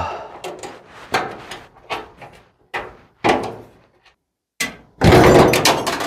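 A string of short metallic knocks and clunks as a steel mounting plate is worked loose from a truck's sheet-metal firewall, then a louder rattling clatter about a second long near the end.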